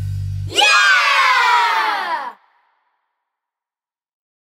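The song's final held low note cuts off about half a second in. A group of children's voices then shouts together, the pitch sliding downward for almost two seconds before it stops.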